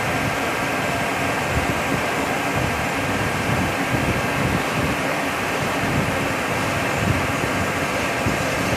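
Cylindrical grinder grinding a piston under flood coolant: a steady running noise from the grinding wheel on the metal, the machine's drives and the splashing coolant, with a faint steady whine through it.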